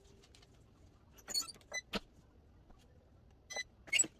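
Short metallic clicks and squeaks from a swing-arm heat press as its handle and arm are worked: a small cluster about a second and a half in, another click near two seconds, and two more near the end, the last the loudest.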